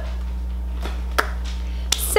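A few light clicks and taps from something being handled and set aside, the sharpest a little over a second in, over a steady low hum.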